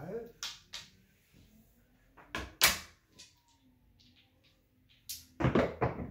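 Several short, sharp clacks of dice and a wooden dice stick on a felt-covered craps table as the dice are gathered and thrown. The loudest pair comes about two and a half seconds in.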